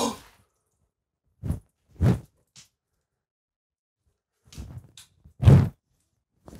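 A few brief, separate soft thuds and knocks with silence between them, the loudest near the end: a thrown deep-fried potato croquette hitting the wall.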